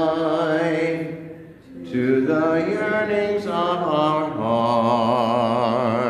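The closing hymn sung by a single voice, with a short breath between phrases about a second and a half in, then a long held note with a wide vibrato.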